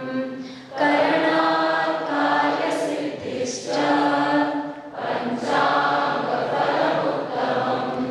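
Many voices chanting a Sanskrit verse together in unison, in long held phrases with short breaks for breath between them.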